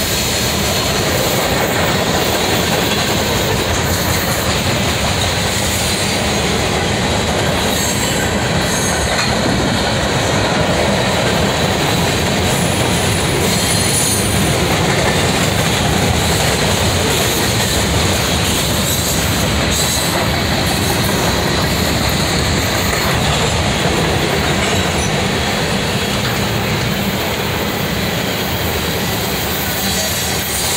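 Freight cars of a mixed train (boxcars, tank cars, gondolas) rolling past close by: a steady, loud rumble of steel wheels on the rails, with a faint high squeal briefly near the middle.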